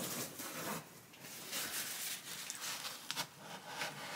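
Crumpled paper towel rustling and rubbing across the wooden top of an archtop guitar, with scattered light scrapes and ticks of handling.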